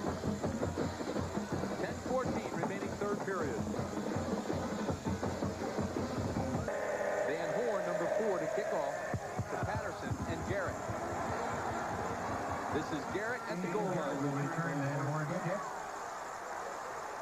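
Marching-band music with drums over crowd noise in a football stadium. About seven seconds in, the sound changes abruptly to held notes.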